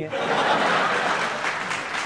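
Studio audience applauding. The applause breaks out suddenly and holds fairly evenly.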